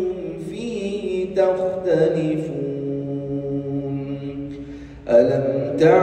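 A man reciting the Quran in a melodic chanting style. He draws out the closing syllables of a verse into one long held note that slowly falls in pitch and fades. After a short breath he begins the next verse loudly about five seconds in.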